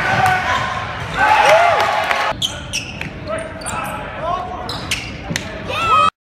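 Live basketball game audio in a gymnasium: a ball bouncing on the hardwood court and players' and spectators' voices echoing in the hall. The busy background drops suddenly a little over two seconds in and gives way to quieter, separate thumps.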